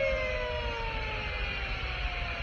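Warning siren at a rocket-motor test stand sounding during the final countdown, several tones slowly falling in pitch over a steady hiss.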